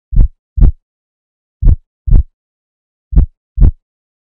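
Slow heartbeat sound effect: three deep double thumps, lub-dub, about a second and a half apart, with silence between.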